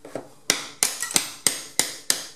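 Hammer striking a steel bolster chisel driven behind ceramic wall tiles to knock them off the wall: about six sharp ringing blows in quick succession from about half a second in, roughly three a second.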